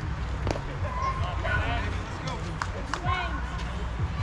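Distant voices calling out, faint and overlapping, over a steady low rumble, with a few short sharp clicks.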